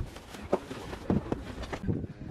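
Footsteps on a pavement with a few short, irregular knocks from handling things being carried.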